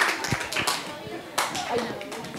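A group of children clapping, the applause dying away to a few scattered claps.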